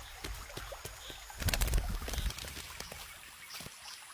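White-necked rockfowl hopping and working wet mud into its nest: quiet soft taps and wet squelchy clicks, with a few louder low thuds in the middle.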